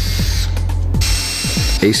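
Cordless drill unscrewing the side pieces of a wooden arch frame, whining in two short bursts: one ending about half a second in, the other from about a second in until just before the end.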